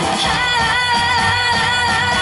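A female singer performing a Korean trot song live over amplified backing music with a steady low beat, holding one long note.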